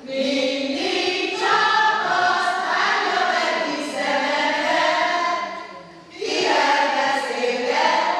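Amateur folk choir of older men and women singing together through a microphone, with a short break between phrases about six seconds in.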